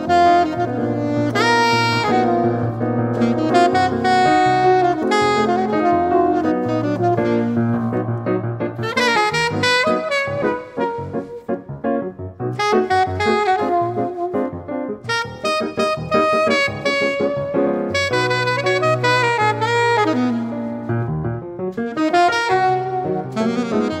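Jazz saxophone and piano duo: the saxophone plays long, sometimes bending melody notes over held piano chords, breaking into a flurry of quick short notes in the middle.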